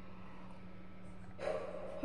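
Quiet breathing and swallowing as a woman drinks from a glass, with a short muffled hum into the glass near the end.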